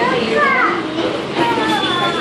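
Young children's voices at play: high-pitched calls and chatter, with a couple of rising and falling squeals.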